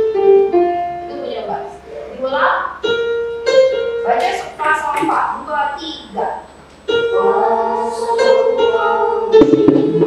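Electronic keyboard playing short phrases of notes and chords, with a voice alongside, as in a choir rehearsal run-through of a part. There is a short lull past the middle, then louder held chords.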